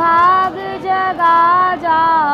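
A high solo voice singing a Hindi devotional bhajan melody: a run of held notes that slide up and down in pitch, with short breaks between them.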